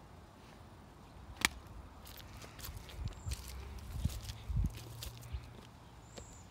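Footsteps of a person walking, a few irregular soft thuds through the second half, with a single sharp click about a second and a half in.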